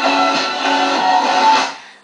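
Instrumental music led by a plucked string instrument playing a melody, fading out about a second and a half in to a brief moment of near silence at the end.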